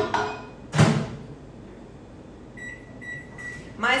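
Microwave oven door shut with a knock about a second in, then three short keypad beeps as the timer is set for another 15 seconds to melt white chocolate.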